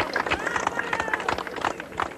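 Concert audience clapping, with shouts and cheers mixed in, after the band has stopped playing.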